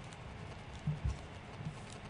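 A few soft, low thumps and knocks over faint room hiss, from papers and a pen being handled on a bench desk close to its microphone.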